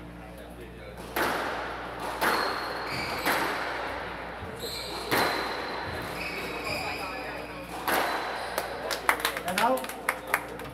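Squash rally: the ball struck by racquets and hitting the walls every one to three seconds, each hit echoing around the glass-walled court. Near the end come a quick flurry of knocks and shoe squeaks on the wooden floor.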